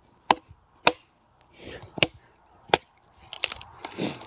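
A hatchet blade set in a stick of kindling, knocked down onto a wooden chopping block: four sharp wooden knocks about half a second to a second apart, driving the blade into the stick to split it.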